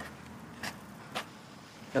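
Faint, steady outdoor street background with a hiss of distant road traffic, broken by two brief soft clicks about half a second apart.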